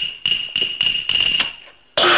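Cantonese opera percussion: struck metal percussion beats at a quickening pace, each stroke ringing at one high pitch, leading into a louder crash at the very end.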